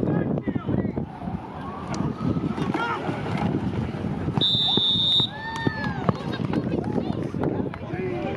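Scattered shouting from players and spectators, with a referee's whistle blown once for under a second about halfway through. Drawn-out cries rise and fall right after it.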